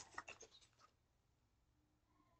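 Near silence, with a few faint, short rustles and clicks from a deck of tarot cards being shuffled by hand in the first second.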